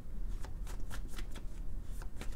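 Tarot cards being shuffled by hand: a quick, irregular run of crisp card clicks and flicks.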